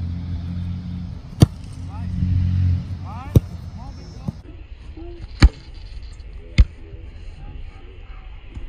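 American footballs kicked by several kickers: four sharp, loud thumps, the first three about two seconds apart and the last about a second after the third, over a low rumble in the first few seconds.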